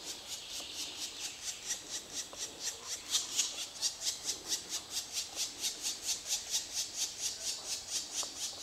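Black woodpecker nestlings begging in the nest hole as the adult feeds them: a rapid, evenly spaced series of raspy high calls, several a second, a little louder from about three seconds in.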